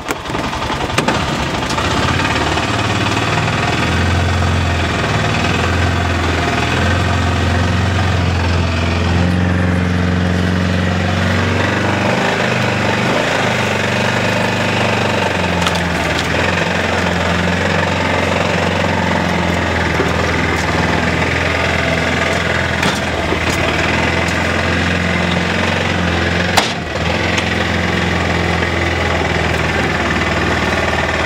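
Arctic Cat Prowler 700 XTX UTV engine running steadily at low speed, with one sharp knock about three-quarters of the way through.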